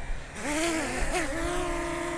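DJI Mini 2 drone's four propeller motors starting up and spinning up from the hand, a whine that rises in pitch for about a second and then settles into a steady hover tone.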